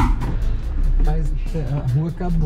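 Car driving on a dirt road, heard from inside the cabin: a loud, steady low rumble of tyres and engine that begins abruptly, with a voice and music over it.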